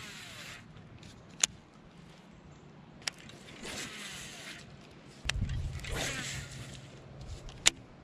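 A baitcasting rod and reel being worked while fishing a soft-plastic worm. Several sharp clicks come from the reel and rod. Short whirring spells of reeling line in come around the middle and again a couple of seconds later, with a dull low bump and rumble about five seconds in.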